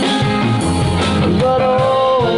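Live rock band playing: two electric guitars, electric bass and drum kit. A long held note comes in just past the middle.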